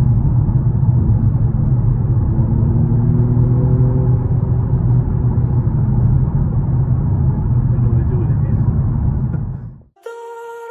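Low rumble of engine and road noise inside the cabin of a BMW M235i, driving through a road tunnel. It fades out near the end.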